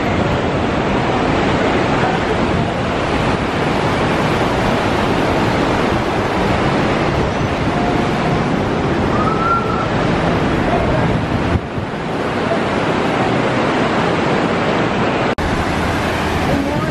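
Ocean surf washing onto a sandy beach: a loud, steady rush of breaking waves.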